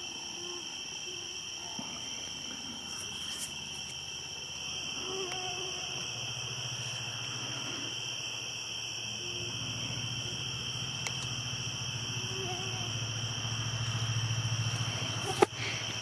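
Steady night chorus of crickets, a continuous high trill in two bands. A low hum comes in about six seconds in and grows louder toward the end, and a sharp click sounds near the end.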